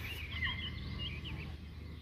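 Small birds chirping: a few short high notes in the first half and one about a second in, over a steady low background rumble.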